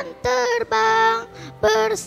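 A young boy singing a worship song into a microphone through the hall's PA, in short held notes with brief breaks between them, over electronic keyboard accompaniment.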